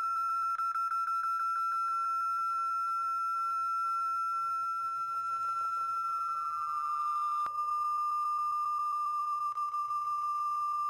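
A steady, high-pitched electronic-sounding tone that holds one pitch, then, with a click about seven and a half seconds in, steps down slightly and carries on.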